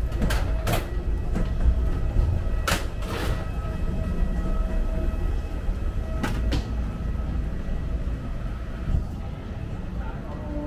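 Inside an airport jet bridge and walkway: a steady low rumble under a faint steady hum, with a few sharp knocks, two close together about a second in, a pair around three seconds and another pair past six seconds.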